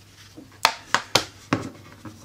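Four short, sharp clicks and knocks of a plastic phone case and a phone being handled and set on a table.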